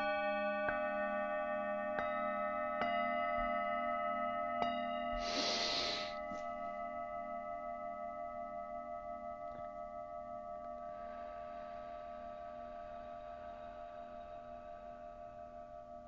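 A singing bowl ringing with a wavering low tone and several bright overtones, struck again lightly a few times in the first five seconds, then slowly fading. A deep breath in about five seconds in and a long, slow breath out from about eleven seconds.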